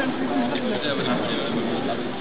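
Background voices: people talking, not clearly worded.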